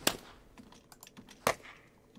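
Two sharp hand claps about a second and a half apart, played back from a field recording after peak normalizing, so the two are at a similar level. A few faint clicks fall between them.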